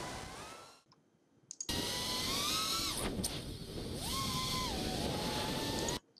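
Racing miniquad's brushless motors and propellers whining, the pitch rising and falling as it flies a roll. The sound fades out under a second in, drops out for about a second, then comes back and cuts off suddenly at the end.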